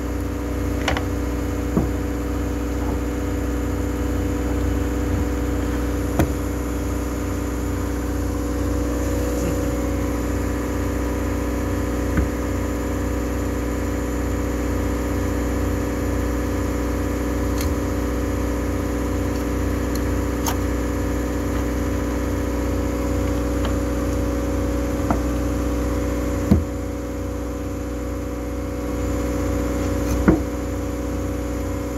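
A steady machinery drone with several held low tones, with a few sharp clicks and taps over it now and then from the steel wire rope strands and metal spike being worked by hand in splicing.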